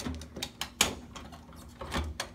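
Several short plastic clicks and knocks as a paper roll is dropped into and seated in the paper holder of a DNP DS-RX1HS photo printer, the loudest knock a little under a second in.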